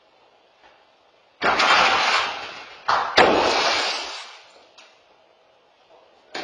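A large pane of tempered glass shattering in two crashes, the first about a second and a half in and the second about three seconds in. Each crash is followed by a shower of small fragments scattering across the floor and dying away.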